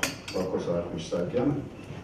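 A man's voice speaking quietly, with a sharp click right at the start.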